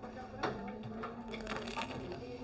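Quiet bar room sound: a low steady hum and faint background murmur, with a soft click about half a second in.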